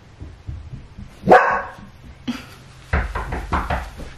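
A dog barks once, loudly, about a second in, excited at people arriving. Near the end comes a quick run of thumps.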